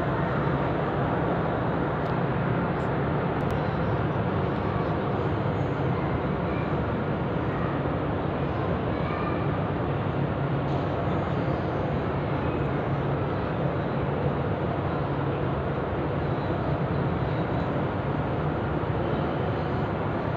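Steady, unchanging rushing noise with a low hum, the ambient sound of a large carpeted mosque prayer hall.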